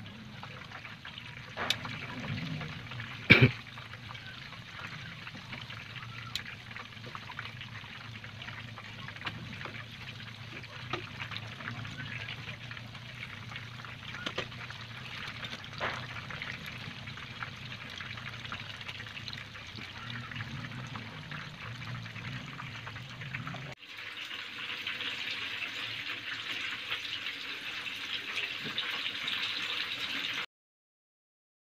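Battered tofu stuffed with meatball filling deep-frying in a pan of hot oil: a steady sizzle with crackles, and a few sharp clicks as the tongs knock the pan, the loudest about three seconds in. Near the end, after a cut, the sizzle turns louder and brighter.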